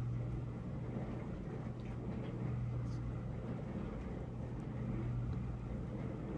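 Steady low hum with faint background hiss, the room tone of a voice-over recording, with a few faint ticks.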